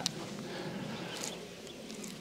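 Quiet open-air background with a few short, high chirps of birds a little past a second in.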